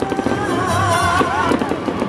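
Live ranchera band with accordion and guitars playing, a voice holding a wavering note in the middle, and many sharp pops crackling over the music.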